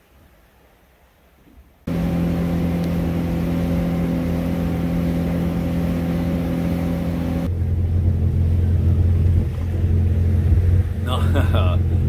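Yamaha jet boat's engine running steadily underway, starting suddenly about two seconds in, with several steady tones over a rumble. About seven seconds in the sound shifts to a heavier, lower rumble.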